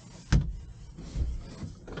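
A sharp knock about a third of a second in, then soft thuds and rubbing as a travel trailer's pantry door is pulled closed, with a few small knocks near the end.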